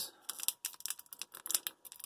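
Foil wrapper of a 2003 Donruss Diamond Kings trading-card pack crinkling in a run of small, irregular clicks as fingers pick and pull at its crimped top seam to open it without scissors.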